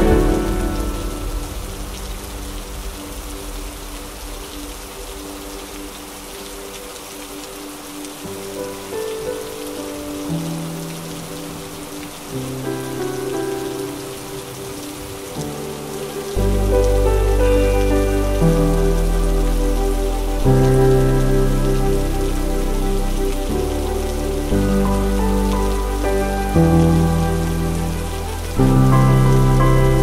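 Steady rain falling on paving stones, under soft background music. A louder passage fades out at the start; quiet notes return, and a fuller band with a bass line comes in about halfway through.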